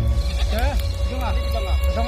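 Soundtrack of the music video playing: a low music bed with a steady held tone, over which a voice makes a string of short rising-and-falling calls about twice a second.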